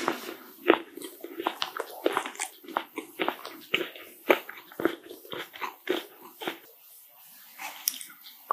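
Close-miked chewing of a chocolate-drizzled green macaron: a quick run of sharp, wet crackling mouth sounds. These ease off about six and a half seconds in, and a fresh bite comes near the end.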